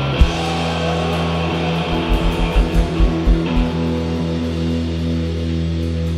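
Live rock band on electric guitars and bass holding a sustained chord, with a quick run of about seven kick-drum hits about two seconds in. The chord is then left ringing, as at the close of a song.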